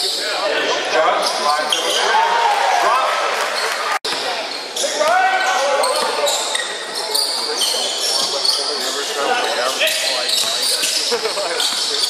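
Basketball game in a large gym hall: a ball bouncing on the hardwood court, sneakers squeaking and players calling out, all echoing. The sound drops out for an instant about four seconds in.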